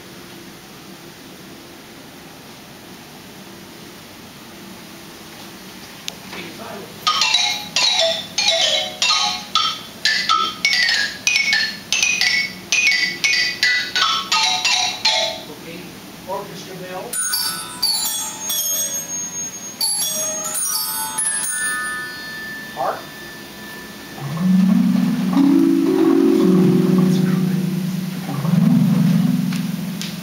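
Theatre pipe organ's tuned percussion (xylophone/glockenspiel) played as a run of about seventeen bright struck notes, about two a second, followed by a few lighter high tinkles. Near the end come deep, sustained organ chords.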